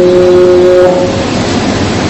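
A man's voice holding one long, steady note of Arabic Quran recitation. The note ends just over a second in, and a hiss follows.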